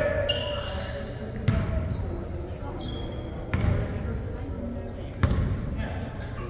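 A basketball bouncing on a hardwood gym floor, a few separate thuds ringing in the large hall, with short high sneaker squeaks and players' voices in the background.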